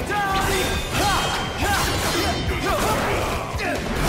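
Dramatic background music layered with sword-fight sound effects: blades clashing and swishing through the air in quick succession.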